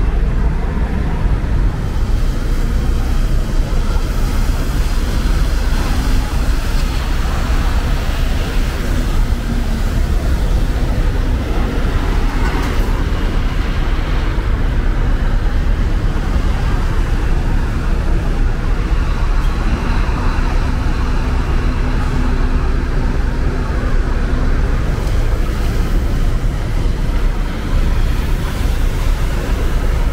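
Diesel engines of intercity coaches running and manoeuvring across a bus terminal yard, a steady low rumble with a faint engine hum rising at times.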